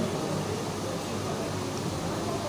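Steady background noise of a restaurant dining room: a low, even hum and hiss, typical of air conditioning or ventilation.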